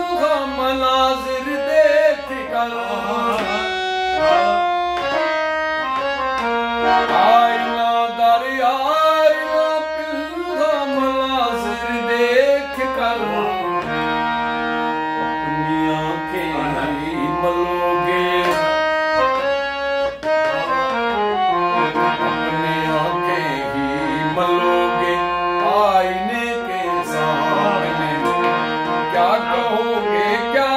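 Harmonium being played: a melody moving up and down over held reed notes.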